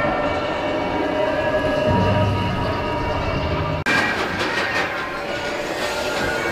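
Expedition Everest roller coaster train running on its track, a steady rumble and rattle from the ride train. About four seconds in there is a sudden break, after which the rattling is busier.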